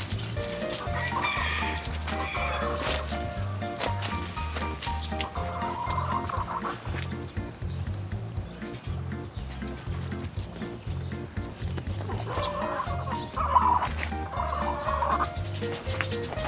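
Nagoya Cochin hens clucking and calling in bursts, about a second in, around six seconds and again near the end, the loudest call near the end, over background music with a steady bass line.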